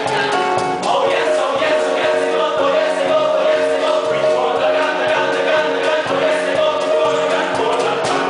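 A stage chorus singing a musical-theatre number together over live accompaniment, steady and loud throughout.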